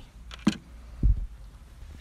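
A sharp click about half a second in, then a dull low thump about a second in, over a low steady rumble.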